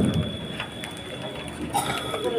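Steady rain falling on wet pavement, an even hiss with faint scattered drop ticks.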